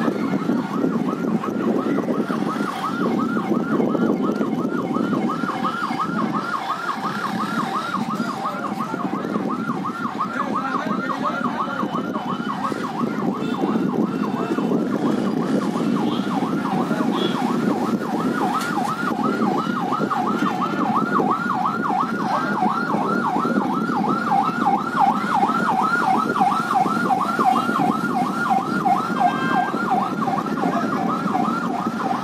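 Electronic emergency-vehicle siren in a fast yelp, a rapid run of rising sweeps repeating without a break, over a low steady hum of street noise.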